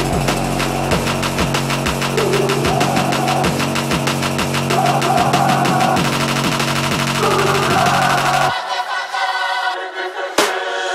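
Electronic dance track building up with no vocals: held synth chords over a rapid drum roll that speeds up. The bass drops out about eight and a half seconds in.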